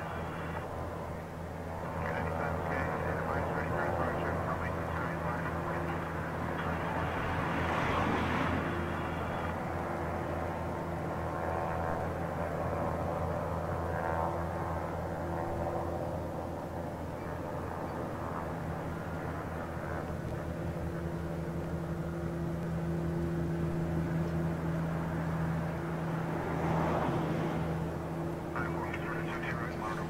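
Boeing 787's GE jet engines running at taxi idle as the airliner rolls slowly along the runway: a steady hum and rush of jet noise, swelling twice, once about a quarter of the way in and again near the end.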